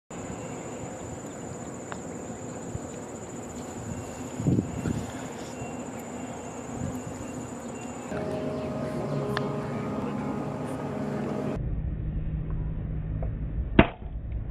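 Outdoor ambience of insects with a steady high buzz, giving way after about eight seconds to a low steady hum, then a sharp single click just before the end.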